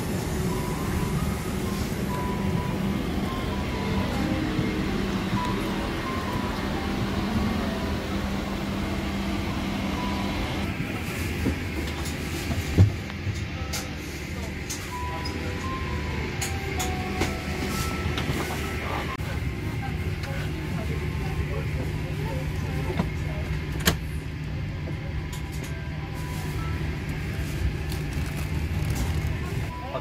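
Airliner cabin during boarding: the steady hum of the aircraft's ventilation, with passengers' voices and music in the background. A few clicks and knocks, the sharpest about 13 seconds in.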